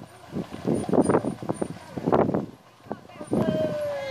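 People talking close by, the words unclear. Near the end a drawn-out tone slides slowly down in pitch.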